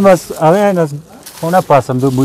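Men's voices talking in short phrases, with a brief pause about a second in.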